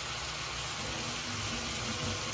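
Blanched French green beans and garlic sizzling in a pan on the stove as they warm through: a steady, even hiss.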